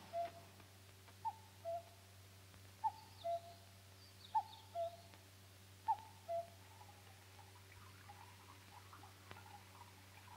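A bird's two-note call, a short higher note falling to a lower one, repeated five times about a second and a half apart and stopping after about six seconds. Faint high chirps come in the middle.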